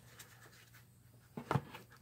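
A stack of baseball trading cards handled and set down on a table: faint shuffling, then two short light taps about a second and a half in.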